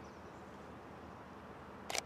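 Faint steady background hiss, with one short click near the end.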